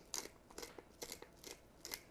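Pepper mill being twisted to grind black pepper into a pot of sauce: a series of faint, short crunches, about two a second.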